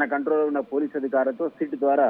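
Speech only: a man talking over a narrow-band telephone line.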